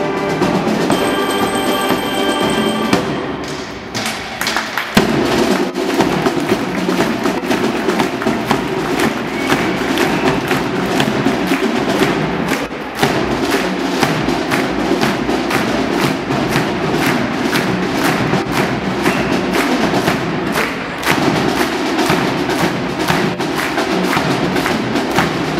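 School marching band's brass holding a chord that dies away about three seconds in. Then the drum section plays a fast, steady cadence of sharp snare and stick strokes with bass drum beats.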